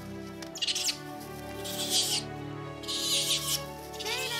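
Gentle background music with sustained tones, over three short bursts of high, scratchy chittering about a second apart: a small dinosaur's chirping calls.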